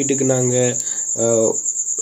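A man's voice drawing out two long hesitant syllables, with a steady high-pitched trill beneath it.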